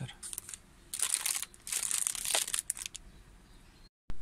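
Crinkling and rustling of plastic packaging and cable being handled, in several short bursts over the first couple of seconds, then quieter.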